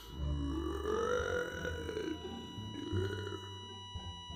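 A deep, drawn-out male voice stretching out the words 'best friend' in two long pieces, the first about two seconds long, over a thin, steady high ringing tone.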